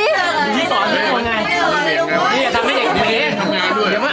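Several people talking at once around a dinner table: continuous, overlapping conversational chatter.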